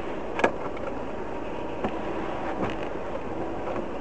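Steady road and engine noise inside a car's cabin as it drives slowly on a slushy street, with a faint knock about half a second in.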